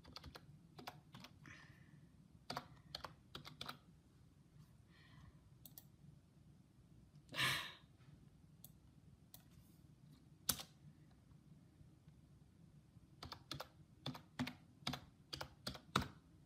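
Faint typing on a computer keyboard in short bursts of keystrokes, a password being entered, with a single sharp click partway through. One short, louder burst of noise comes about halfway through.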